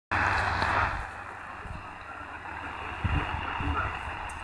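Degen DE1103 portable shortwave receiver tuned to 4010 kHz AM, playing a weak long-distance signal buried in static from its speaker. A loud rush of hiss for about the first second drops to a lower, steady static.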